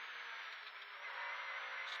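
Škoda 130 LR rally car at speed, heard from inside the cabin: a steady drone of its rear-mounted four-cylinder engine and road noise, thin and without bass, in a gap between the co-driver's pace notes.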